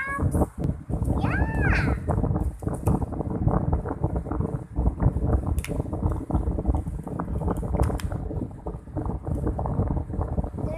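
Small plastic toys being handled and clicked together, with close rustling handling noise. About a second in, a child's short, high, gliding vocal sound rises and falls twice.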